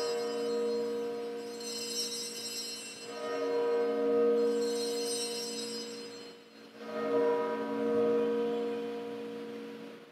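Bells rung at the elevation of the consecrated host: three rounds of ringing, each swelling and then fading away, the last dying out near the end.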